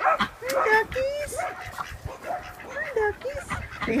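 A small flock of domestic ducks calling: a quick run of short calls, each rising and falling in pitch, one after another.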